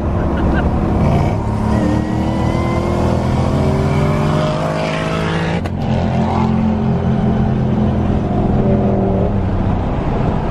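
Car engine heard from inside the cabin while accelerating on the freeway. Its pitch climbs for a few seconds, breaks off sharply about five and a half seconds in, then holds steady.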